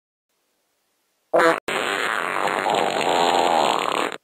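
Fart sound effect: a short pitched blast about a second and a half in, a split-second break, then a long noisy fart of about two and a half seconds that cuts off abruptly.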